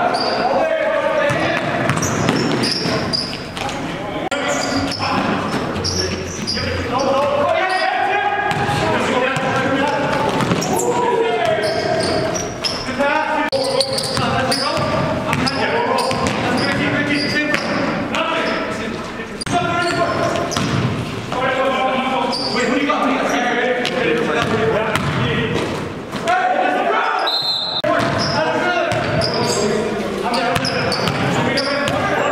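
Basketball bouncing on a hardwood gym floor during play, under continuous voices echoing in a large hall.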